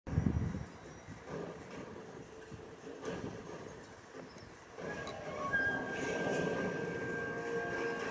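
Animated-film soundtrack playing from a TV: a heavy thud at the very start, then a low rumble, with held steady tones coming in and the sound growing louder about five seconds in.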